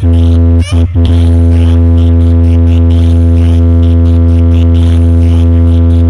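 A DJ speaker box stack playing a loud, steady low bass drone during a speaker check. A couple of brief breaks come about a second in, then it holds unbroken.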